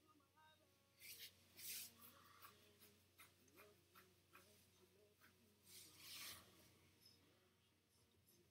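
Near silence, with soft rustling of clothing: a few brief rubs and brushes, the loudest about a second and a half in and again around six seconds in.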